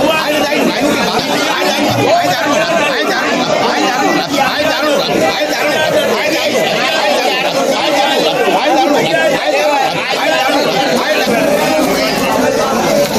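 Busy market crowd chatter: many voices talking over one another without a break.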